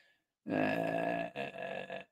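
A man's long, low, gravelly "uhh" of hesitation, lasting under a second, followed by a shorter, quieter second one.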